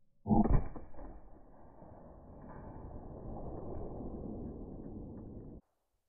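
A .44 Magnum revolver shot fired at a slate pool table: a sudden, muffled low bang about a third of a second in that dies away within a second, followed by a quieter low rumble that cuts off abruptly shortly before the end.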